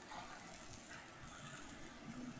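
Faint room tone: a low steady hum and soft hiss with no voices.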